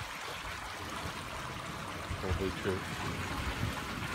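Steady trickle of running water.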